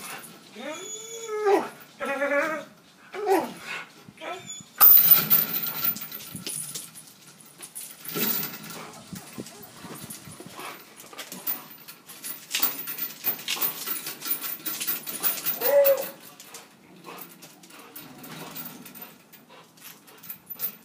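A dog playing tug on a spring pole, making several rising-and-falling whines in the first few seconds and another at about 16 s. Rough rustling and scuffling noise from the rope and the play runs through most of the rest.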